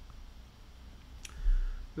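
A single sharp click a little over a second in, then a brief low thump, over a faint steady low hum.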